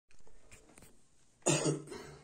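A man's short cough, two quick bursts about one and a half seconds in, preceded by faint rustling of the phone being handled.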